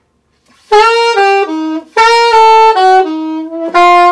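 Alto saxophone playing a jazz eighth-note line in three short runs, starting about two-thirds of a second in, the notes mostly stepping downward. The notes at the peaks, where the line changes direction, are accented by pushing the jaw forward from the relaxed subtone position.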